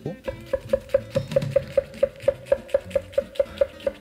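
Chef's knife slicing an onion on an end-grain wooden cutting board: quick, even strokes, each blade hitting the board with a short knock, about five a second.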